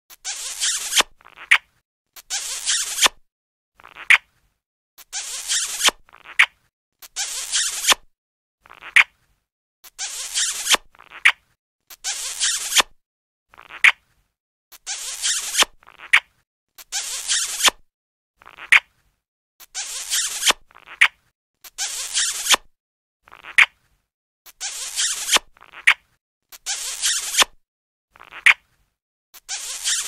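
Cartoon kissing sound effect repeated over and over: smooching kisses in pairs about every five seconds, each a short lip smack followed by a brief hissing smooch.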